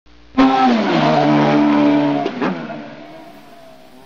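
A loud vehicle sound starts suddenly, holds a steady pitch for about two seconds, then fades away.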